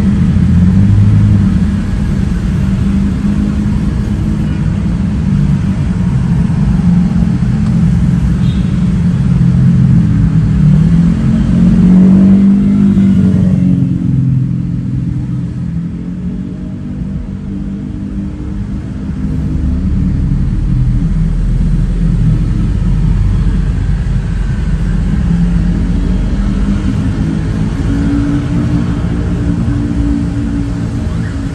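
Steady rumble of engines and tyres in slow, stop-and-go city traffic of cars and motor scooters. About twelve seconds in, an engine revs up. The sound then grows quieter and duller for several seconds before the rumble comes back.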